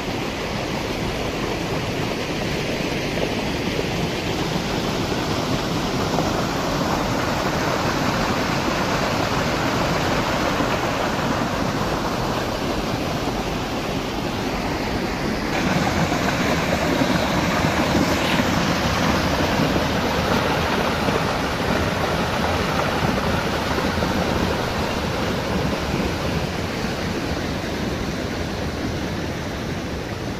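Water pouring over the low stone weirs of a spring-fed pond: a steady rushing of falling water that gets louder about halfway through.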